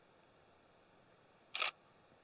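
Nikon D5600 DSLR taking a single shot: one quick two-part shutter and mirror clack about one and a half seconds in, against near silence.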